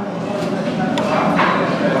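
A metal spoon stirring through soft tofu in a ceramic bowl, clinking sharply against the bowl about three times.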